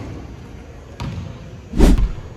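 A basketball on a hardwood gym court: a light knock at the start, a sharp click about a second in, and one loud bounce off the floor near the end.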